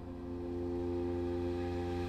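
Orchestral gong played with a soft mallet, its low ringing tone swelling gradually over steady sustained notes.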